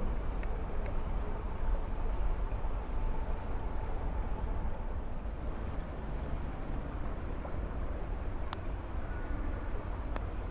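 Steady low outdoor rumble with a few small clicks from plastic spice-container parts being handled, one sharper click near the end.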